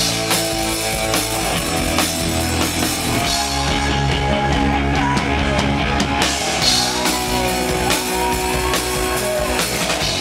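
Live rock band playing loudly: drum kit and electric guitars in a steady, full-band passage.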